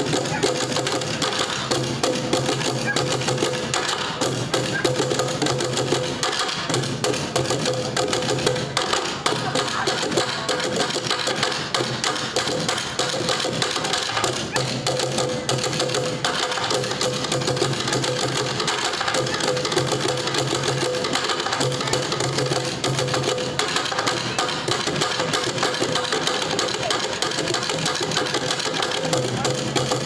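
A bucket-drum ensemble playing, several players beating on plastic buckets in a dense, continuous rhythm.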